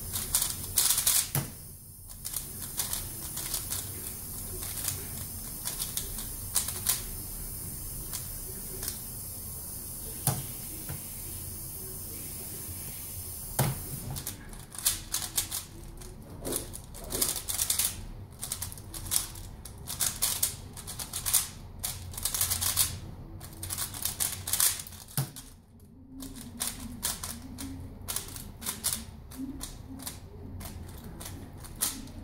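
Valk Power 3x3 speed cube clicking as its layers are turned by hand: scattered turns at first, then a fast, dense run of clicks about halfway through, as in a timed speedsolve, with a brief pause near the end.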